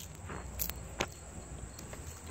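Faint steady insect chirring in the background, with two sharp light clicks about two-thirds of a second and a second in.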